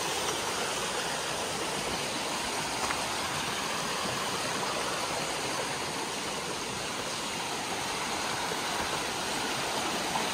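A flooded woodland creek running fast over rocks, a steady, unbroken rush of water; the stepping stones are submerged under the high water.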